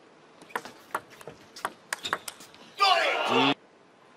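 Table tennis ball clicking off bats and table in a quick rally, about seven sharp clicks over a second and a half, followed near the end by a short loud voice.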